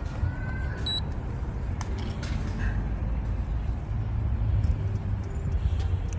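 A steady low outdoor rumble, with a single short, high-pitched electronic beep about a second in.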